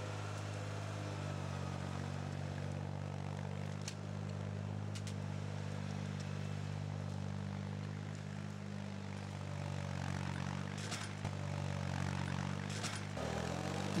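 Diesel engine of a Rauptrac RT55 rubber-tracked forestry crawler running steadily as the machine works on a steep slope, with a few faint clicks. The engine note shifts slightly near the end.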